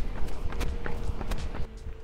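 Running footsteps on asphalt, a few sharp steps a second, over a low wind rumble on the microphone.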